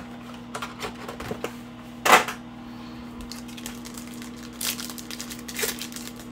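Foil trading-card pack being torn open by hand: small crackles and crinkles, with one short loud rip about two seconds in and a couple of smaller tears near the end.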